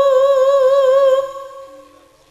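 A female tayub singer holds one long high note with a steady vibrato, which fades away in the second half.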